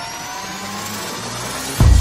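Electronic logo-sting sound design: a riser of slowly climbing tones over swelling noise with the bass pulled out, ending in a sudden deep bass hit near the end.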